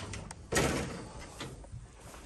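Office door being pushed open and swinging, with a few clicks from its handle and latch and a sudden heavier knock about half a second in that fades away over about a second.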